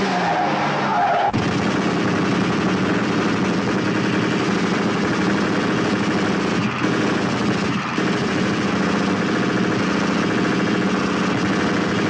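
Automatic gunfire in a film soundtrack: one long unbroken burst of rapid shots that cuts off abruptly at the end.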